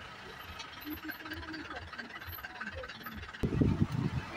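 Quiet engine and road noise heard from inside a slow-moving vehicle's cabin. A loud voice cuts in suddenly near the end.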